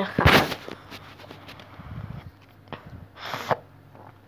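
A person coughs once, loud and noisy, just after the start, then gives a second, shorter breathy burst about three seconds in.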